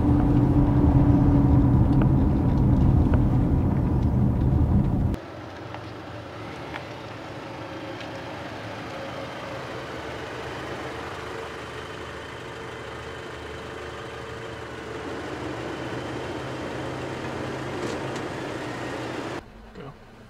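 A car driving, heard first from inside the cabin as a loud, steady low engine and road drone. About five seconds in it cuts suddenly to a quieter sound of the car heard from outside, engine running and tyres on the road, which drops away just before the end.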